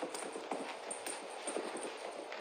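Irregular hollow taps and knocks of a plastic bottle being batted and pounced on by a kitten across a carpet.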